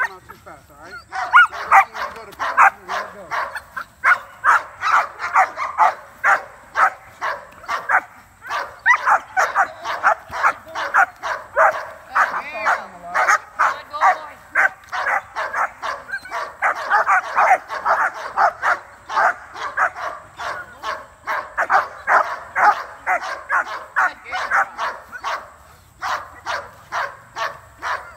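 Young shepherd-type dog barking over and over, about two to three high-pitched barks a second with only brief pauses, as it lunges on the leash at a helper during bitework.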